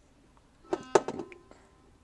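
Soldering iron tip tapping against a battery terminal and steel frame: a short cluster of light clicks a little under a second in, with a brief metallic ring.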